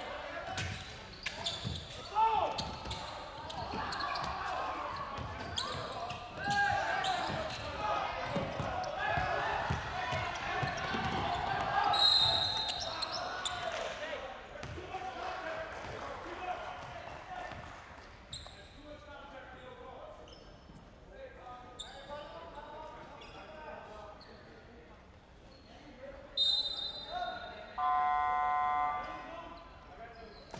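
Basketball game sound in a large hall: a ball bouncing on the hardwood court and players' and crowd voices. A referee's whistle sounds about twelve seconds in and again near the end, followed by a steady horn-like buzzer lasting about a second and a half.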